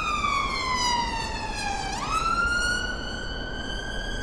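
Ambulance siren wailing: one slow cycle whose pitch falls for about two seconds, snaps back up, then climbs slowly again.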